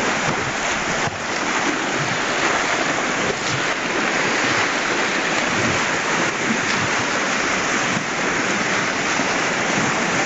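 Steady rushing of a shallow creek's current, mixed with the splashing of horses' legs as they wade through it.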